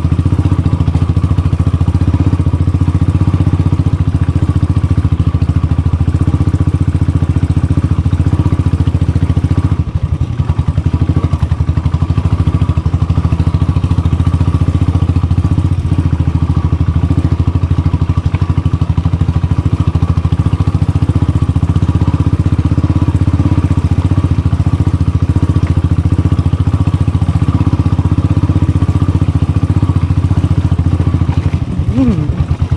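Motorcycle engine running steadily at low speed while the bike is ridden over a rocky dirt trail, heard from on the bike. The sound briefly dips about ten seconds in.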